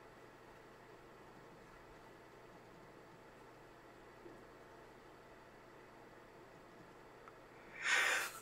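Near silence: faint steady room hiss, with a breath drawn near the end, just before speaking.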